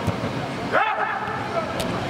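A player's short loud shout on the pitch, a rising call about three-quarters of a second in, over a hall's steady background noise; a sharp knock comes near the end.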